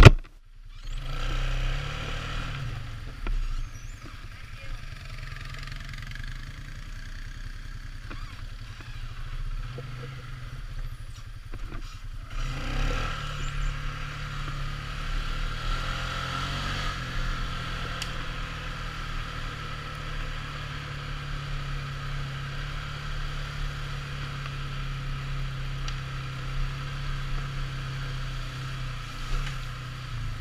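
ATV engine running at a low, steady idle, then pulling away about twelve seconds in and running louder and steadily as the quad rides along a dirt trail.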